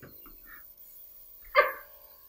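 A man's short high-pitched yelp about one and a half seconds in, as a handheld airbrush starts spraying makeup onto his closed-eyed face, over a faint steady hum.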